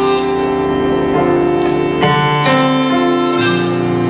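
Live band playing a slow instrumental passage: long held notes and chords that change about every second, with a reedy, harmonica-like lead over keyboard.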